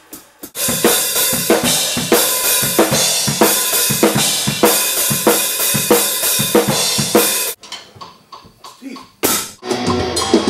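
Drum kit played in a steady beat, with kick, snare and cymbals. About seven and a half seconds in it falls back to a few quieter hits, then one loud burst just before the end.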